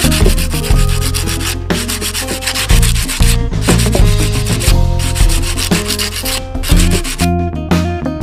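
Hand sanding of a cast cement pot's surface: an abrasive pad scraping back and forth over rough cement, smoothing it, with background music underneath.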